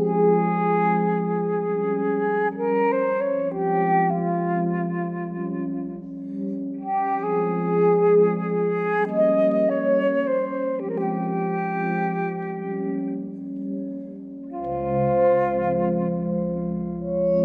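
Transverse flute playing a slow melody of long held notes over sustained chords from a Cristal Baschet, whose glass rods are stroked with wet fingers. About a second before the end, a deeper low note enters beneath them.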